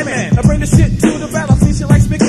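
1990s underground hip-hop track: rapping over a steady drum beat and bass.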